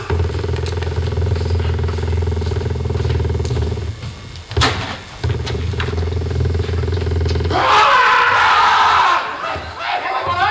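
A steady low engine-like rumble played over a hall's PA, cut short by a click about halfway through, then picking up again. Near the end it gives way to a loud, rough rushing noise lasting about a second and a half.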